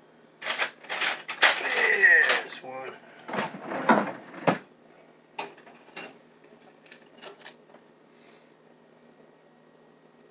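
Handling sounds from a plastic butter container being picked up and opened: a dense run of crackles and knocks, followed by a few sharp clicks, then it goes much quieter as the butter is spread.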